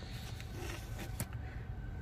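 Quiet pause: a low steady background rumble with one faint click about a second in.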